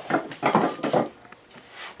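A small wooden cabinet on casters being rolled aside, with wood and the tools on it rattling and knocking, mostly in the first second.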